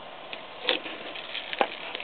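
Two short, light knocks about a second apart over a low steady hiss, typical of hands touching the panel or handling the camera.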